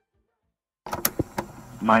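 Dead silence, then a little under a second in a recording cuts in abruptly with background hiss and two sharp clicks, and a voice starts speaking near the end.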